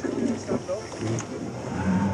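Sound on board an RNLI inshore lifeboat: its outboard engine running over the noise of wind and water, with short snatches of crew voices.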